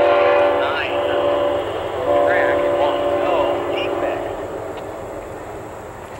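Distant diesel locomotive air horn sounding a chord: one long blast that ends about a second and a half in, then a second long blast from about two seconds in. The sound fades as the train moves away.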